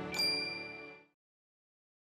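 A single bright, high ding, a bell-like sparkle chime, strikes just after the start over the last of the fading music and rings down. All sound cuts off about a second in.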